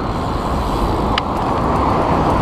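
Steady rumbling noise of wind and rolling on a handlebar-mounted camera as a BMX bike rides along a city street, with one short click a little over a second in.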